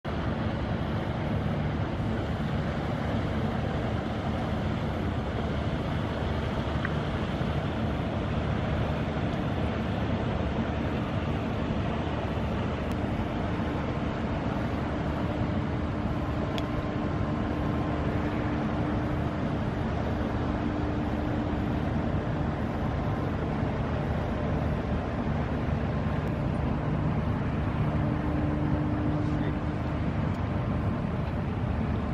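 Steady low rumble of a passing coaster (small cargo ship) under way, with a constant rushing background and a faint humming tone that fades in and out.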